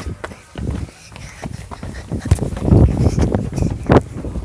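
Rubbing, clicks and low thumps of a phone being carried by hand while its holder walks: scattered knocks at first, then louder rumbling handling noise from about halfway through.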